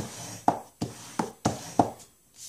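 A bone folder drawn in quick strokes along the fold of a sheet of cardstock, creasing it: about six short, sharp scraping sounds in two seconds.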